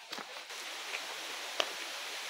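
A steady hiss of outdoor background noise, with a single short click about one and a half seconds in.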